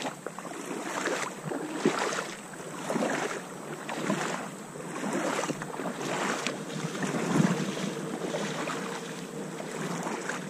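Shallow river water lapping and splashing close to the microphone, mixed with wind noise, swelling and easing about once a second.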